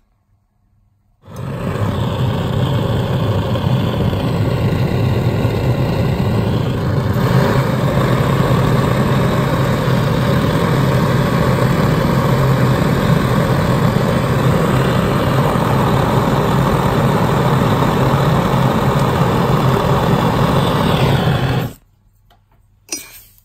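Jeweller's soldering torch running as one steady, loud rushing noise, strongest low down. It starts suddenly about a second in and cuts off just before the end. It is heating the seam of a 22k gold bangle until the metal glows red and the solder flows.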